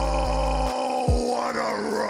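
A man's long, drawn-out shout of "Oh!" into a microphone, held on one pitch and then wavering near the end, over background music with deep bass.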